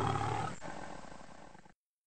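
Roar-like sound effect in a logo outro, fading steadily and then cutting off abruptly near the end.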